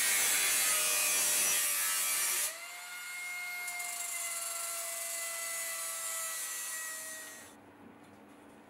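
Pneumatic angle grinder with a flap disc deburring the edge of a thin steel strip: loud grinding for about two and a half seconds, then a lighter pass with a steady whine from the spinning disc, stopping just before the end.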